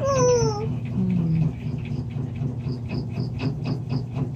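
A short high-pitched call that falls in pitch at the very start. Then coloured pencils scratch on a colouring-book page in quick, even strokes, about four a second.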